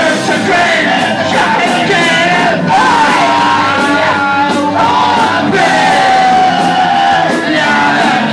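Live punk rock band playing loud, with shouted vocals over electric guitars, bass and drums, and cymbals struck in a steady beat.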